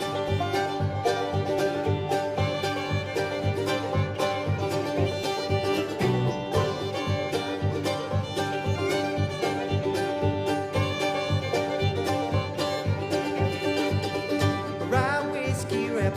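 Acoustic bluegrass string band playing an instrumental break live, with fiddle and banjo over guitar in steady, dense picking.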